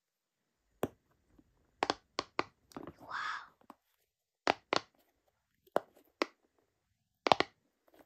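Silicone cube pop-it fidget toy: the bubbles on its four-dot face pushed in one after another with sharp, crispy pops, about a dozen, irregularly spaced and some in quick pairs. A brief soft rustle a little after three seconds.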